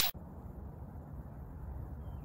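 Steady low background rumble and hiss of an outdoor recording, with no distinct event; the tail of a loud whoosh cuts off suddenly at the very start.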